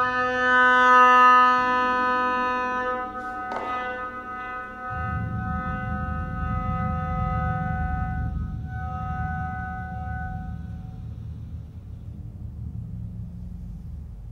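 An oboe holds a long reedy note that slowly fades away over about ten seconds. A single sharp tap comes about three and a half seconds in, and a soft low bass drum roll rumbles underneath from about five seconds in.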